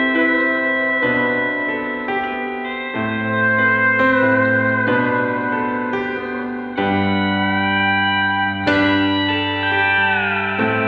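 Instrumental passage of a folk-rock song: sustained guitar chords that change every two seconds or so, with a lead line that glides in pitch.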